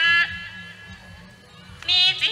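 A woman singing Hmong kwv txhiaj (chanted sung poetry) into a microphone, with a wavering, ornamented voice: a phrase ends shortly after the start, a short quieter pause follows, and the next phrase begins near the end.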